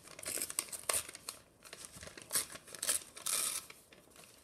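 Brown paper bag being torn into strips by hand: a run of short, sharp rips, about six or seven, with paper rustling and crinkling between them.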